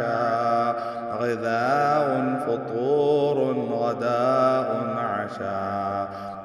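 A voice chanting in a continuous sing-song melody, with long, wavering held notes.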